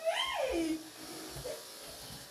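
A person's drawn-out wordless exclamation, an 'ooh' whose pitch rises briefly and then slides down, in reaction to the newly decorated room, followed by quiet room sound.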